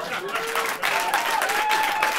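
Live audience applauding at the end of a told story, with held musical tones of the outro music coming in underneath from about a third of a second in.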